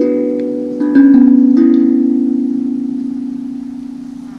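Handpan (hang drum) played with the hands: a few notes struck in the first second and a half, the loudest about a second in, then their ringing fades slowly through the rest.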